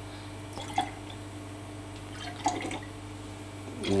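Liquid poured from a small glass jug into tall glasses: two short pours, about a second in and again about halfway, over a steady low hum.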